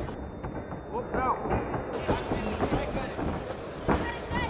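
Gloved punches and kicks landing in a kickboxing exchange, a scatter of short thuds, with shouting voices from around the ring.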